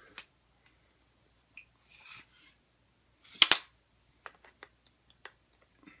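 Plastic parts of a phone tripod and selfie stick being handled and fitted together: scattered light clicks, a brief rub about two seconds in, and one sharp double snap about three and a half seconds in, the loudest sound.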